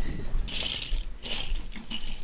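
Small plastic LEGO minifigures clattering and rattling against each other as hands rummage through a big pile of them, in two short spells of rattling.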